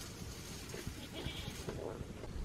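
A goat bleating faintly in the second half.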